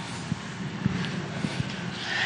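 A steady background hum of a large room in a pause between words, with a few faint, soft knocks.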